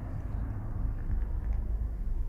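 Low, steady rumble with a faint hiss: background noise inside a pickup truck's cab.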